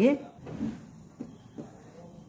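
Quiet handling sounds of fabric being shifted on a sewing machine bed, with a soft knock and a couple of small clicks; the machine itself is not running.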